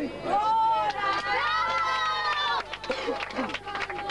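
A man's voice over a hand microphone, drawing one sound out into a long held, sung-like note for over a second, then breaking into quick talk near the end.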